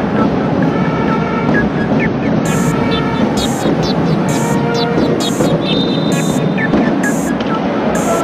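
Basketball arena game sound: sneakers squeaking on the hardwood court over steady crowd noise, with a rhythmic beat from the stands about once a second. A referee's whistle sounds for about a second, some six seconds in.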